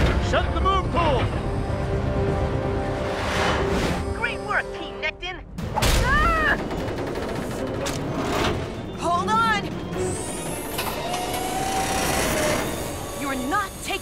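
Cartoon action soundtrack: dramatic score under a squid attack on a submarine, with characters' short shouts and gasps and a loud crash about six seconds in.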